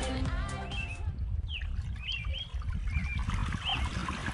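Background music ends about a second in, giving way to birds chirping over a steady low rumble and the faint trickle of water starting to run over a newly built pond waterfall.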